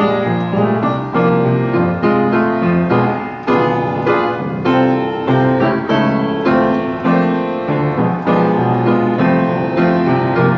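A 1924 Brinkerhoff upright piano, a former player piano with its player mechanism removed, played in full chords, with new notes and chords struck about twice a second and left to ring. The piano has just had a full regulation and tuning.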